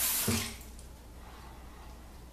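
A brief splash of tap water, about half a second long, as an alum block is wetted at the sink, then quiet room tone.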